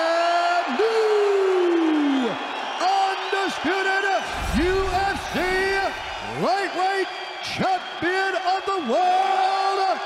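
A ring announcer's voice over the arena PA, stretching the winner's announcement into long, drawn-out held syllables, over steady crowd noise. A low rumble comes in about four seconds in and lasts a couple of seconds.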